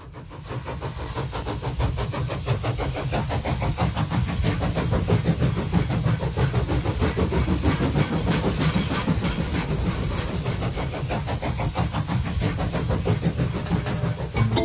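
Passenger train running, heard from inside the carriage: a steady low rumble with a hiss over it, fading in over the first two seconds.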